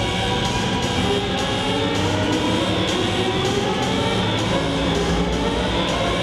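Cello music in a dense, sustained, droning texture, with several held tones that glide slowly upward in pitch.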